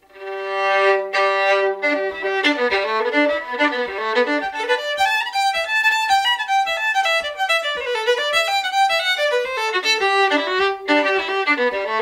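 Solo fiddle playing a reel: it opens on a few long, held bowed notes, then breaks into fast, even runs of notes about two seconds in.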